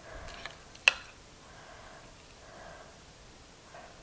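A metal spoon clinks once, sharply, against a glass mixing bowl about a second in, amid soft scraping of the spoon through a raw ground beef and rice filling being scooped into bell peppers.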